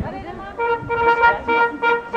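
Small wind band of trumpets, saxophones and tuba striking up about half a second in, playing a run of short, punchy repeated notes at one pitch.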